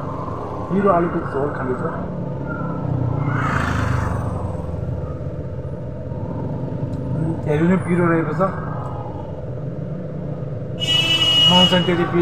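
Street traffic going by: a steady low rumble that swells about four seconds in as a vehicle passes, with a short, bright high-pitched tone near the end.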